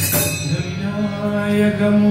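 Bhajan music: a jingling hand-percussion rhythm stops about half a second in, and a long steady note is held.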